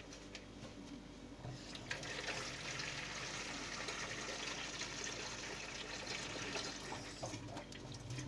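Kitchen tap running, filling a bowl with water. The flow starts about two seconds in, runs steadily, and stops near the end.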